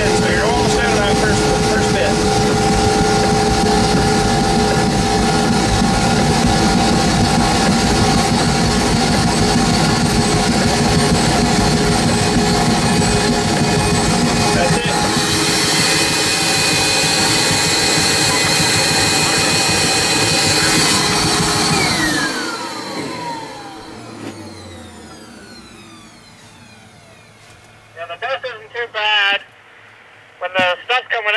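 AttiCat insulation blowing machine running loud and steady, its blower and shredder paddles churning loose-fill insulation. About halfway in the sound turns brighter as the hopper runs empty and it blows harder. Then it is switched off and spins down with a falling whine, fading out over a few seconds.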